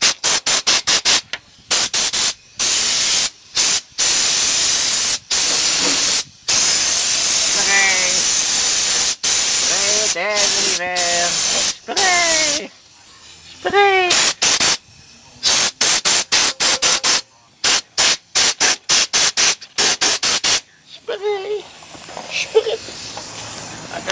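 Fluid Film rust-proofer sprayed onto a truck's underbody: a loud hiss in many short bursts and a few longer ones of two or three seconds, stopping about 21 seconds in.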